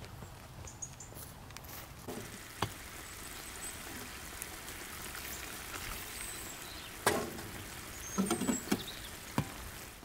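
Hot water poured from a kettle into a metal pan of sliced quince, a steady pour running for about four seconds and ending with a sharp metal clank; a few more metal knocks follow near the end.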